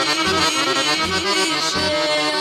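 Instrumental break in a Yugoslav folk-pop song: accordion playing a wavering melody over a steady bass beat.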